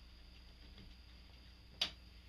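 A single sharp click near the end, over quiet shop room tone.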